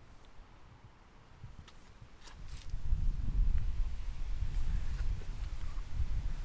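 Quiet at first with a few faint clicks, then a low rumbling noise on the microphone from about three seconds in.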